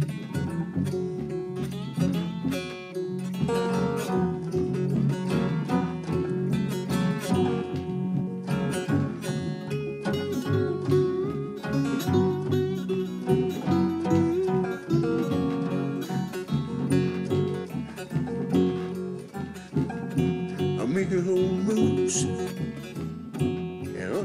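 Acoustic string band playing an instrumental break with no singing: strummed rhythm guitar, a slide diddley bow playing lead runs with gliding notes, and a washtub bass underneath.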